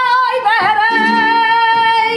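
A female flamenco singer (cante) holds one long high note, with a wavering melismatic ornament in the first half second before the note settles and is held almost to the end, over flamenco guitar accompaniment.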